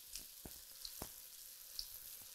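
Flour-dredged crab cakes frying in shallow vegetable oil in a skillet: a faint, steady sizzle with a few soft crackles. The oil is hot enough for a little sizzle rather than a big dramatic one.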